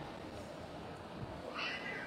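A pause in speech: quiet room tone, with one faint, short, high-pitched cry about one and a half seconds in.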